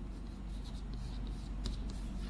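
Chalk writing on a blackboard: a string of short, scratchy strokes as characters are written, over a low steady hum.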